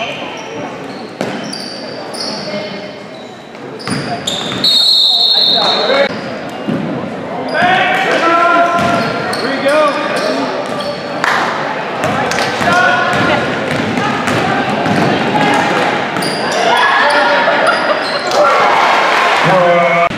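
Basketball game in an echoing school gym: a ball bouncing on the hardwood floor and sneakers squeaking, under spectators' shouting and cheering that grows louder about halfway through.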